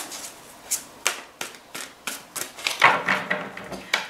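A tarot card deck being shuffled by hand: irregular soft clicks and slaps of cards against each other, with a denser flurry about three seconds in.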